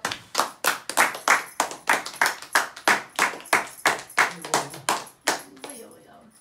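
A small group of people clapping together in a steady rhythm, about four claps a second, dying away near the end.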